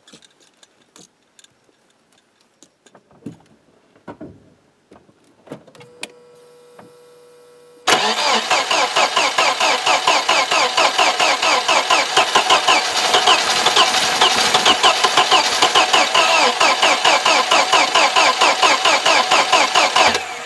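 Mercedes engine cranking on its starter for about twelve seconds in fast, even pulses without catching: it has spark but is not getting enough fuel after standing a long time. Before the cranking, small clicks of work under the hood and a brief steady hum.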